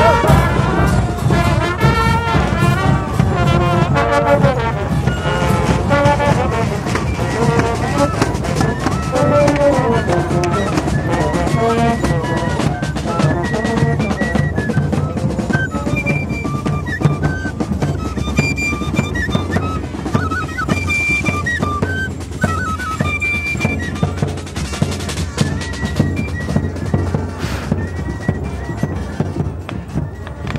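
A band of saxophone and brass instruments playing a melody over steady drumming.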